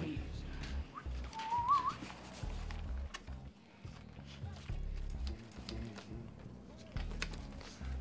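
Background music carried by deep bass notes, with a brief wavering high tone about a second and a half in.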